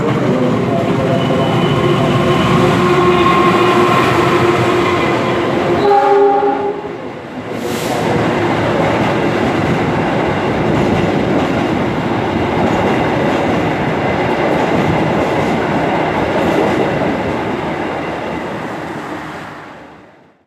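An approaching diesel locomotive hauling an express passenger train sounds a long horn chord, which breaks off about six seconds in. The locomotive and its passenger carriages then rush past close by with a steady rush and rattle of wheels on rail, fading near the end.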